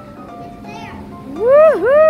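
A high, sing-song voice calling out near the end: a short rising-and-falling cry, then a longer cry that slowly falls, over faint background music.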